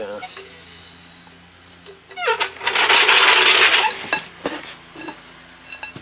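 Hydraulic floor jack being let down: a faint hiss in the first two seconds, then a loud metallic clatter with a short rising squeal at its start, lasting about a second and a half in the middle, followed by a few light clicks.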